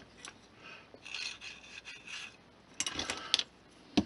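Small cut styrene plastic strips being picked up and handled on a cutting mat: faint rubbing and scraping, with a cluster of light clicks about three seconds in and a sharp click at the end.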